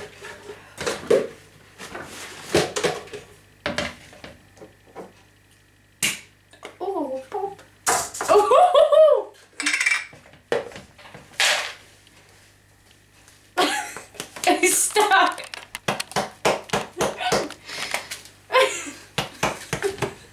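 Clatter and knocks of bowls and kitchenware being handled on a kitchen counter, in short scattered bursts, among a woman's talk.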